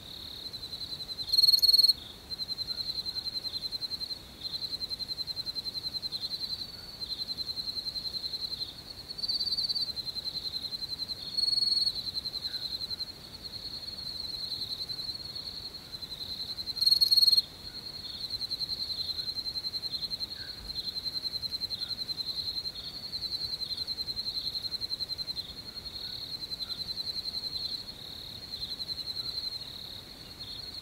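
Crickets chirping in a continuous high, rapidly pulsing trill, with a few short, louder stretches.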